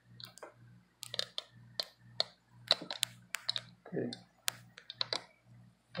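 A scattered run of about twenty light, sharp clicks and taps at irregular intervals, close by: hands handling hardware while working on an open computer.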